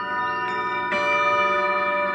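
Tibetan singing bowls ringing: a hand-held bowl is struck with a mallet just under a second in, adding a bright new ring over sustained tones that pulse slowly.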